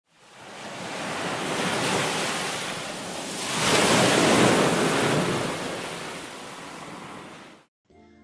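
Ocean surf washing up a sandy beach: a steady rush of waves that fades in, swells twice with the loudest wave about four seconds in, then dies away shortly before the end.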